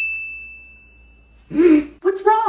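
A single bright ding from a phone's message alert that rings on as one high tone and fades away over about a second and a half. Near the end a woman gives a short startled vocal sound.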